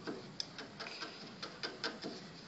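Small hand carving blade scraping and cutting into carved gypsum plaster: short, irregularly spaced scraping clicks, a few a second.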